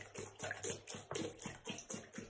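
Cola glugging out of a large upturned plastic soda bottle and splashing into a ceramic bathroom sink: quick, even glugs, about five a second, fairly faint.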